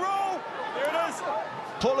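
Mostly a man's voice commentating, with no other sound standing out above it.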